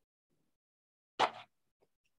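Mostly silence, broken by one short pop a little over a second in.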